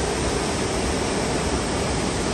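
Mountain stream cascading over boulders: a steady, even rush of white water.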